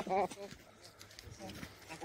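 Young baboons giving short, faint pitched calls: one brief call right at the start, a weaker one just after it, and a faint one later.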